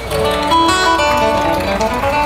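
Solo steel-string acoustic guitar played, a few notes picked one after another and left ringing together.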